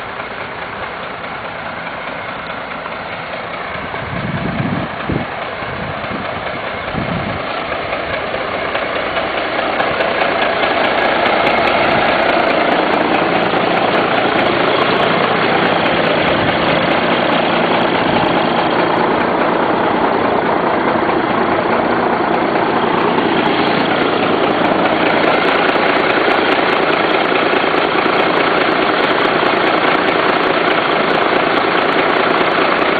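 1987 Freightliner cabover's Cummins diesel engine idling steadily, growing louder and fuller from about ten seconds in as it is heard up close at the exposed engine. A few low thumps come about four to seven seconds in.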